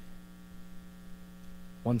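Steady electrical mains hum, a low even tone with fainter higher lines, filling a pause. A man's voice starts a word just before the end.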